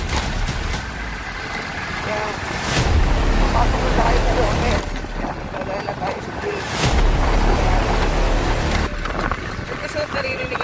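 Wind rumbling on the microphone over a motorcycle running along a street, with traffic passing close by.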